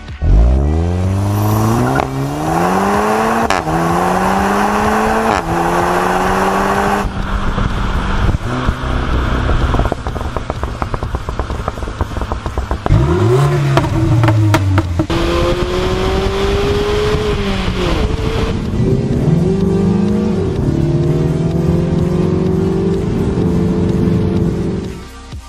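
Car engines accelerating hard: one pulls away and climbs through quick upshifts, its pitch rising and dropping at each shift, then another blips its revs and runs on with a further gear change near the end.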